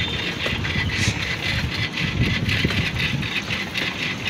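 Riding a bicycle along a paved street: a continuous, uneven low rumble of wind on the microphone and road noise.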